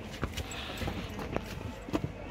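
Footsteps on a hard floor: about five short, sharp knocks, unevenly spaced.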